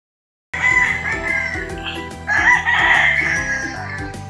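A rooster crowing twice, the second crow louder, over background music with a steady beat; both start suddenly about half a second in, out of silence.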